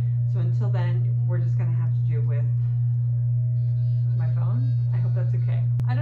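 A loud, steady low hum runs under a woman's talking, a fault in the recording itself rather than anything in the room. There is one brief click near the end.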